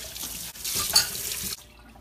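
Kitchen tap running into a stainless steel sink. The water gets louder about half a second in, then is turned off about one and a half seconds in.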